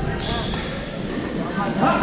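Busy indoor sports hall during badminton play: echoing voices and court noise, with a sharp racket hit on the shuttlecock just after the start and another near the end.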